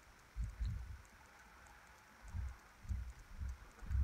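Faint, dull low thumps and knocks of hands and a bobbin holder handling at a fly-tying vise while thread is wrapped over the tie-in: one cluster about half a second in, then several more, spaced irregularly, in the second half.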